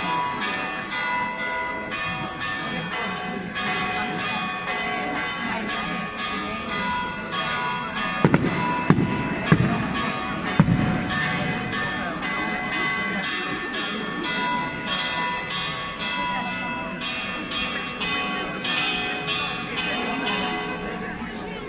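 Bells ringing in a quick, irregular peal of many notes, with a quick run of about five sharp firework bangs near the middle, over crowd voices.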